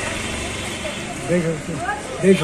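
A man's voice saying a few quiet words about a second and a half in, over a steady background noise.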